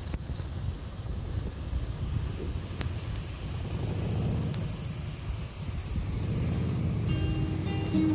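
Low steady rumble of a vehicle with wind on the microphone, and acoustic guitar background music coming in near the end.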